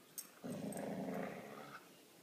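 A dog growling in play while chewing a rope toy: one low growl lasting just over a second, after a short click near the start.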